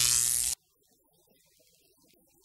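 A short, loud, buzzing tone lasting about half a second that cuts off abruptly, followed by near silence.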